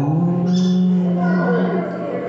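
A person's voice holding one long, steady note for about a second and a half.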